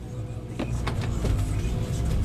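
Low, steady rumble of a vehicle heard from inside its cabin, with a few faint clicks.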